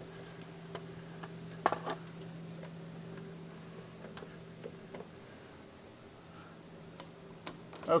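Scattered clicks and knocks of someone climbing a wooden ladder while handling a camera, with a sharp double knock a little under two seconds in, over a steady low hum.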